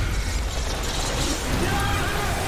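Film-trailer sound effect of a huge swarm of bats rushing past: a loud, dense rattling flutter of wings, with faint thin squeals near the end.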